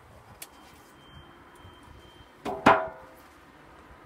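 A beehive frame knocked sharply on a Mini Plus hive box to shake the remaining bees off: a faint click, then two quick knocks close together with a short ringing tail about two and a half seconds in.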